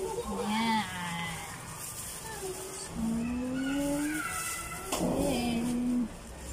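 A person's voice making wordless drawn-out vocal sounds: a short wavering call near the start, then a long held tone that slowly rises in pitch, and another held tone near the end.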